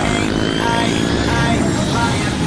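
Several motorcycle engines running steadily as a group of riders rides along the road.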